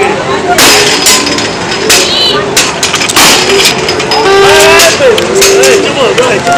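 Several sharp knocks at a carnival high striker game, a mallet striking the strength tester, over a crowd of voices; a held, pitched tone sounds about four seconds in.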